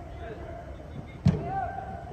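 A single sharp thud of a soccer ball being kicked, about a second and a quarter in, over distant shouts of players on the pitch.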